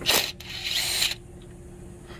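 Power tool spinning out a bolt: a short sharp knock at the start, then about half a second of high-pitched whirring that stops suddenly.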